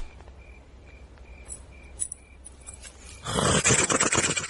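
Crickets chirping at a steady pace, about two chirps a second, over a low hum: a night-time ambience track. About three seconds in, a sudden loud burst of noisy sound takes over.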